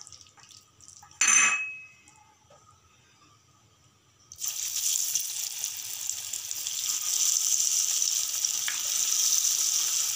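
Onion pakoda batter dropped into hot oil in a kadhai: a steady deep-frying sizzle starts suddenly about four seconds in and grows a little louder as more pakodas go in. Before that, a single short clink about a second in.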